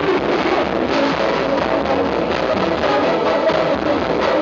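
Pagode baiano band playing live: loud, continuous music with a steady beat.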